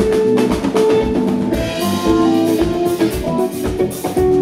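Live band playing an instrumental passage: a drum kit keeps a steady beat under electric guitar and bass guitar notes, with no vocals.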